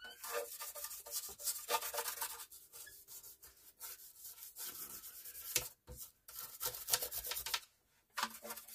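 Hand scrubbing strokes on the cabinet of a 1940s Motorola table radio as it is cleaned: irregular rubbing passes with short pauses between them.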